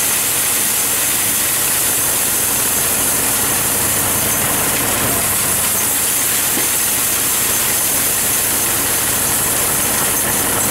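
Wheel loader's diesel engine running steadily, with a steady hiss over it, as rock salt pours from the tipped bucket into a plastic tote tank.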